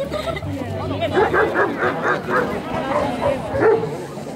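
Dog barking in a quick run of short, high yips, about six a second, starting about a second in, with one louder bark near the end.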